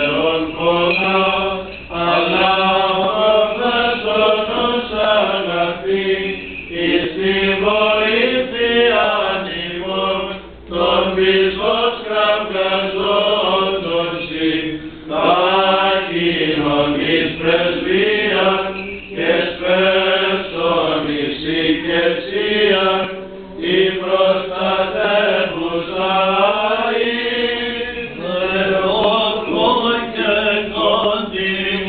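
Byzantine chant of the Greek Orthodox Divine Liturgy at the Little Entrance: voices sing a winding, ornamented melody over a steady held drone note (the ison). The singing comes in long phrases with a few short breaks.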